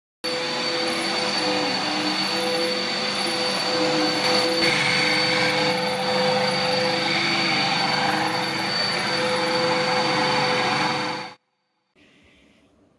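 Vacuum cleaner running steadily with a high whine over its motor noise, then stopping abruptly near the end.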